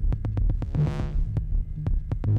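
Improvised electronic music from analog synthesizers and drum machines: a pulsing bass line under fast, even ticks, with a filtered sweep that swells and fades about once every two seconds.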